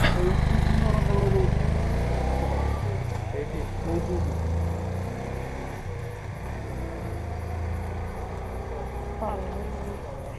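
Motorcycle engine idling with a steady low rumble, loudest over the first couple of seconds and then easing off, with faint voices in the background.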